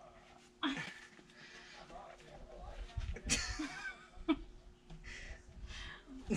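Quiet laughter and straining vocal sounds from two people struggling to pull a tight rubber boot off a man's foot, with a sharp click or scuff about three seconds in.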